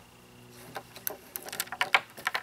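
Cords and plug connectors of a small solar power bank being handled and plugged in: a run of light clicks and knocks that starts about a second in and grows busier.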